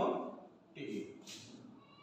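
A man's voice spelling out single letters ("O", "T") of an English word, short drawn-out syllables with a rising pitch at the start.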